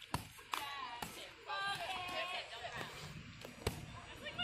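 Boxing gloves landing punches during sparring: a few sharp slaps in the first second and another near the end, over people's voices.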